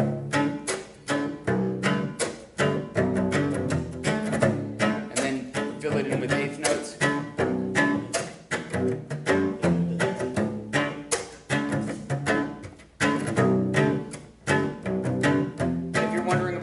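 Solo cello played in a driving rhythm with the chop technique: down-bowed chords alternating with sharp, scratchy percussive bow strokes several times a second.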